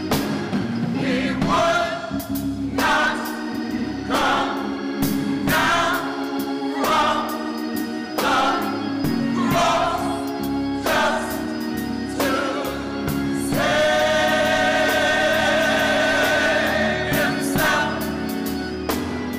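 Gospel choir singing in short phrases over steady keyboard chords, ending on one long held chord near the end.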